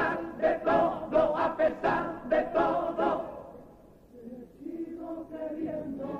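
A carnival comparsa's chorus of male voices singing together: a quick run of short sung syllables for about three seconds, a brief drop around four seconds in, then the singing resumes on longer held notes.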